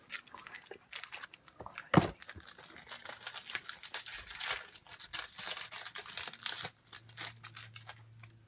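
Foil Match Attax card packet being torn open and crinkled, a steady run of crackles with one sharper, louder crackle about two seconds in.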